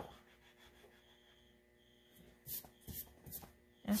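Oil pastel rubbed on paper in about three short strokes in the second half, after a near-silent start.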